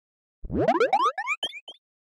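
Cartoon-style logo sting sound effect: a quick run of upward-sliding boing tones, each higher and fainter than the last, fading out after about a second and a half.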